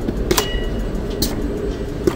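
Steady low mechanical running noise from a robotic tomato-picking arm, with two sharp clicks and a brief high beep about half a second in.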